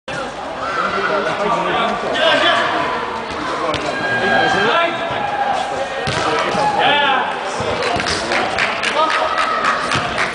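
Several people's voices calling and talking over one another during an indoor football game, with a few thuds of the ball being kicked.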